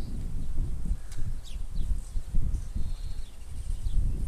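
Wind buffeting the microphone in uneven gusts, with a few faint, short bird chirps above it.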